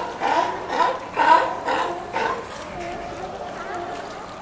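Sea lions barking, a run of loud, harsh barks about every half second, then fainter barking from about halfway through.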